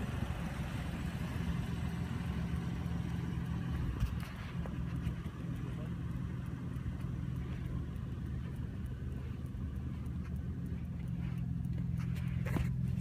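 Toyota Land Cruiser V8 engine idling steadily, a low even hum.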